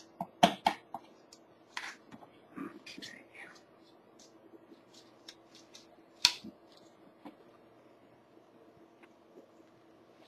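Scattered light clicks and taps of a paint brush against a small plastic tub as epoxy resin is stirred and the tub is handled, with one sharper tap about six seconds in. A faint steady hum runs underneath.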